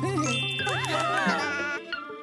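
Children's cartoon music and sound effects: a steady bass note under bright held tones and chirping pitches that slide up and down.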